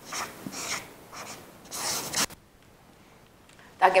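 Marker pen scratching across a white wall panel in a run of short writing strokes, which stop a little over two seconds in.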